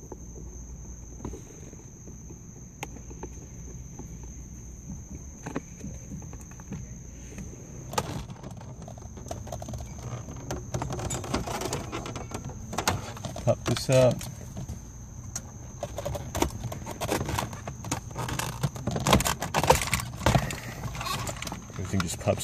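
Plastic center-console trim being unscrewed and pried loose by hand: scattered clicks, taps and rattles that grow busier in the second half as the panel comes free.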